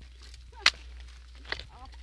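A single sharp crack under a second in, then a fainter click about a second later.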